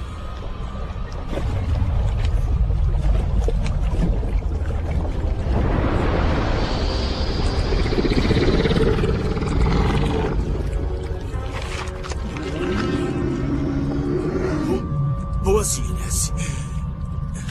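Film soundtrack: music over a low rumble, with a long creature roar that swells and fades in the middle, and a shorter growl a few seconds later.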